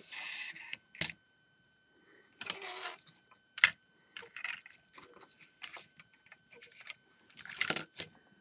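Loose Lego plastic pieces handled and set down on a table: scattered sharp clicks and short rattling clatters. The longer clatters come near the start, about two and a half seconds in, and near the end.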